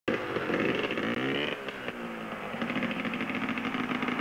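Yamaha PW50's small single-cylinder two-stroke engine running while the bike lies on its side stuck in a mud puddle. The pitch rises briefly about a second in, then holds steady.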